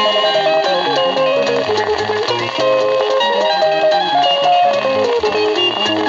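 A 1977 vinyl single of Kenyan Luo band music playing on a turntable: an instrumental stretch of interlocking electric guitar lines over a stepping bass line.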